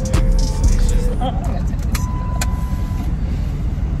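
Steady low rumble of a car heard from inside its cabin, with faint voices.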